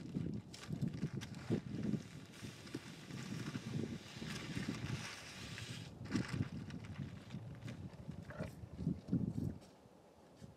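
Loose livestock mineral poured from a feed bag into a plastic tub, heard as a hiss lasting a few seconds in the middle, over irregular low rumbling.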